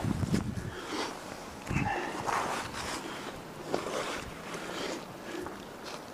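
A tree climber's clothing and gear scraping and rustling against rough tree bark, with irregular knocks and two heavier bumps, one near the start and one about two seconds in.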